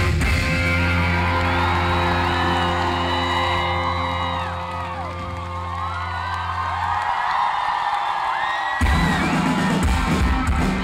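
Live rock band holding a long sustained chord while the crowd whoops and cheers over it. The low end drops out about seven seconds in, and the full band comes back in loudly near the end.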